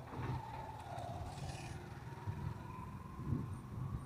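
Motorcycle engine of a tricycle (motorcycle with sidecar) running at low speed, a low rumble under a steady drone that rises slightly in pitch.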